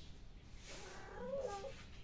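A kitten meowing once in a wavering call that lasts about a second, in the middle.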